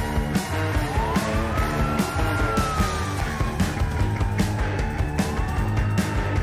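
Post-punk rock music with a steady drumbeat, bass and guitar. A high sliding tone rises over the first two seconds, falls slowly, then rises again near the end, like a siren.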